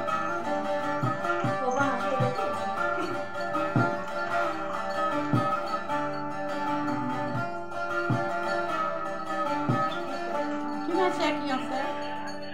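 Bağlama (Turkish long-necked saz) played solo, its strings plucked and strummed in a steady rhythm in an instrumental passage of a Turkish folk tune.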